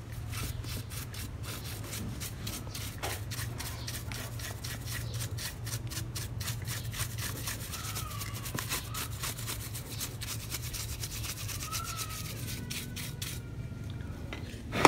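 A brush scrubbing caked brick dust off the plastic housing of a TOTAL 750 W angle grinder, in rapid, repeated scraping strokes.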